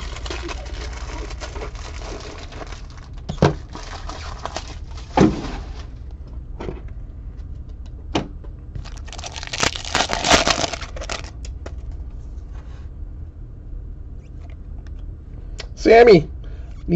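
Foil trading-card pack wrappers crinkling and rustling as packs are handled and torn open, with a denser burst of crinkling about nine to eleven seconds in. A few sharp clicks and short knocks from the cards and packs fall in between.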